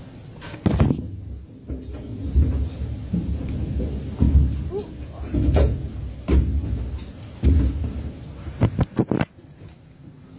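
A person climbing scaffolding: irregular heavy knocks and thumps of hands and feet on the metal frame and planks, about one a second, mixed with rubbing and handling noise on the phone's microphone.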